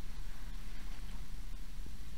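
Room tone: a steady low hum and faint background hiss, with no distinct sound.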